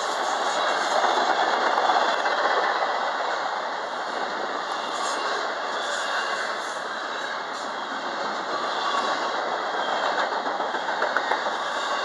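Intermodal freight train's double-stack well cars and trailer flatcars rolling past: a steady, loud noise of steel wheels on rail, with a few sharp clicks scattered through it.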